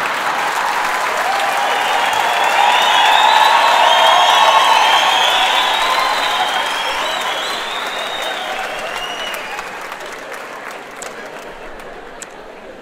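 Large audience applauding, building to its loudest about four seconds in and then slowly dying away.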